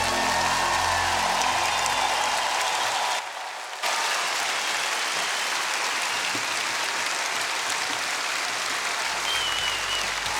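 Large studio audience applauding after a song, with the last held note of the music fading out in the first couple of seconds. The applause briefly drops away about three seconds in.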